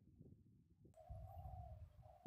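Near silence at first. About a second in, a faint low rumble begins, with a faint steady call from a bird.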